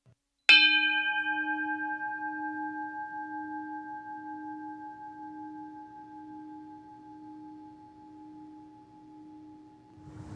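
A singing bowl struck once about half a second in, then ringing and slowly fading, its low tone wavering in a slow, even beat.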